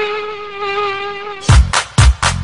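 Electronic dance music: one held, slightly wavering note for about a second and a half, then a beat with heavy kick drums comes in near the end.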